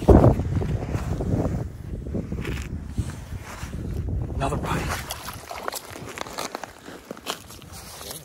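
Wind rumbling on the microphone, with a loud jolt right at the start, then scattered crunches and crackles of snow and ice as the line is hauled in by hand at the hole.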